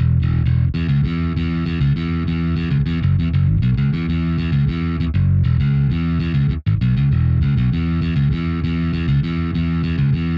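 UJAM Virtual Bassist Rowdy, a software electric bass plugin, playing a busy rock bass line triggered from a MIDI keyboard. The sound cuts out for a split second about six and a half seconds in.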